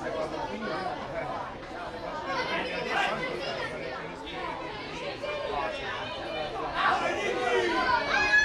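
Many overlapping voices of players and sideline spectators chattering and calling out at a youth football match, with louder shouts near the end.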